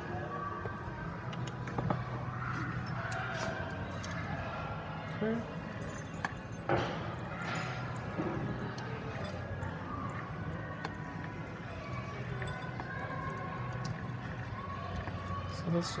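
Coarse salt and dried herbs pouring from a glass measuring jug through a plastic funnel into a glass bottle, with a spatula scraping and clicking against the glass a few times, mostly in the middle. Faint background voices and a low steady hum run underneath.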